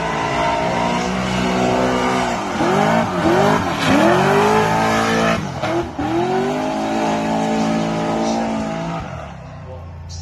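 Drift car engine revving hard through a slide, its pitch dropping and climbing back again several times as the throttle is worked. A hiss of tyre squeal runs underneath. It is loudest in the middle and fades away near the end.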